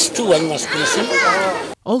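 Speech: a man talking into a microphone, with other, higher voices behind him. The sound cuts off abruptly near the end and a different speaker's voice begins.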